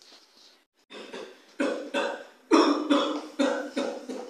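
A person coughing over and over in short, harsh fits, about two coughs a second, starting about a second in and loudest in the middle.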